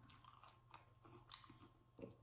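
Faint chewing of tortilla chips, with soft, irregular crunches and mouth clicks.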